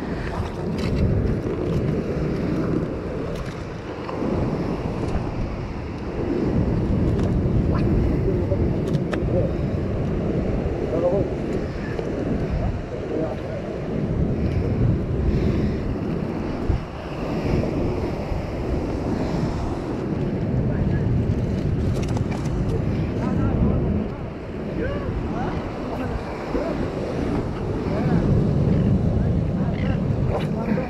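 Sea surf washing over shore rocks, mixed with wind buffeting the microphone: a rough, steady rush that swells and eases every few seconds. Faint voices are mixed in.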